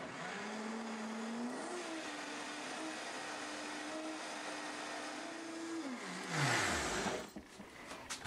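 Vitamix blender motor blending tofu and water: it rises in pitch as it comes up to speed, runs steadily, then is switched off and winds down about six seconds in. A brief burst of noise follows as it stops.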